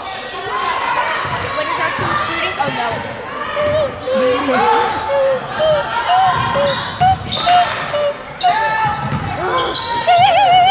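Basketball game on a hardwood gym court: the ball bouncing, with players and spectators calling out in the echoing gym.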